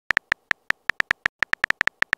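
Phone keyboard tap sound effect from a texting-story app, one short high click per letter typed. There are about fifteen identical clicks in two seconds at an uneven typing pace.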